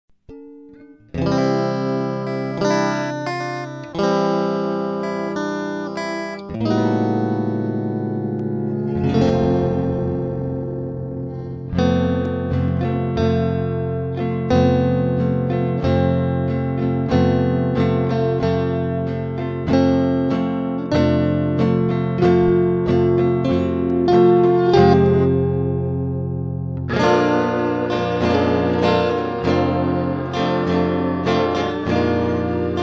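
Guitar music: plucked chords left to ring, starting about a second in, with a new chord every second or two.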